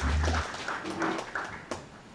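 Scattered applause dying away, with a dull low thump on the podium microphone at the start.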